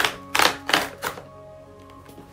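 A few short bursts of paper rustling in the first second or so, as a white paper mailing envelope is handled and opened, over soft background music.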